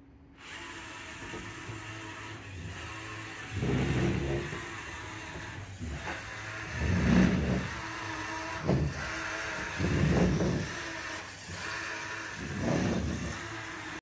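A four-motor LEGO robot's electric motors whining as it drives, with louder, deeper surges about every three seconds as it runs its repeating forward, reverse and spin routine.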